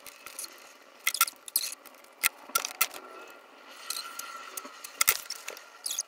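Irregular clicks and rustles of close handling as long hair is worked through the fingers, with a few sharper crackles about a second in, a little past two seconds, and near the five-second mark.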